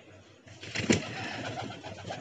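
Golden Bajre pigeon taking off from a ledge: a sharp wing clap about a second in, then about a second of wing flapping as it flies down.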